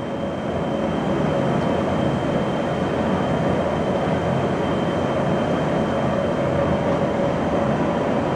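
Oxyacetylene cutting torch with an inch-and-a-half-rated tip, its preheat flame burning with a steady, even rushing noise and a faint steady tone in it.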